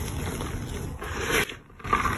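Soft, powdery gym chalk being crushed and rubbed between bare hands, a steady dry crumbling and scraping with a louder crunch a little past the middle. The sound drops away briefly near the end, then resumes.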